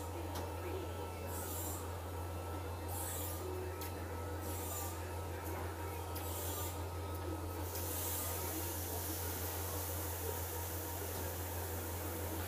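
Steady low hum of pewter-casting workshop equipment, with short bursts of hiss about every one and a half to two seconds that turn into a continuous hiss about eight seconds in, while the freshly poured steel mould cools.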